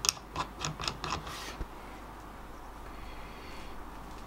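Several light metallic clicks from the brass depth-adjustment knob of a Veritas router plane being turned by hand, all within about the first second and a half.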